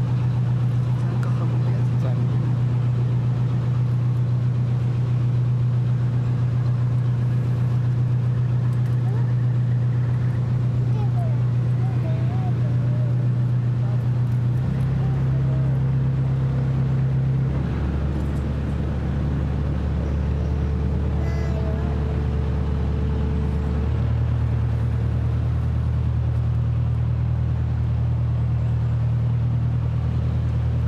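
Sightseeing river boat's engine running, a steady low drone that shifts pitch about 15 seconds in, drops lower about 18 seconds in and rises again about 24 seconds in, as the boat changes speed.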